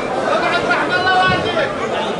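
Several people's voices talking over one another without a break, with one voice holding a longer tone near the middle.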